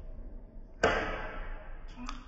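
A sudden sharp hit about a second in that dies away over the following second, an added editing sound effect for a glitch transition.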